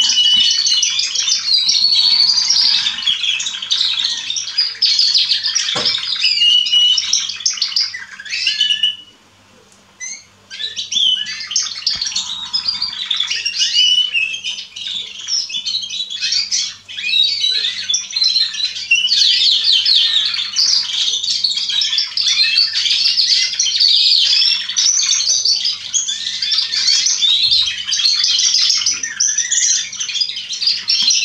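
Young canaries singing in a continuous, dense stream of rapid trills and warbles. The song breaks off for about a second and a half around nine seconds in, then resumes.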